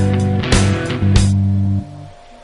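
Background music with sustained instruments and a few sharp hits; it drops away sharply near the end.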